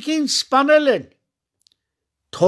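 Speech only: a man speaking in Armenian, breaking off about a second in.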